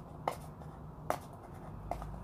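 Sharp clicks and taps from handling a small metal watch tin, three in two seconds as it is turned over in the hands.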